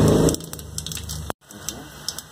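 Whole spices sizzling and crackling in hot mustard oil in a clay handi. A loud low hum stops a moment in, and the sound cuts out completely for an instant just past halfway.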